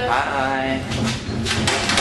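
A person's voice talking, with steady background hiss.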